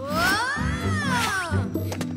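Animated giant bird calling: one long cry that rises and falls in pitch over about a second and a half, over background film music.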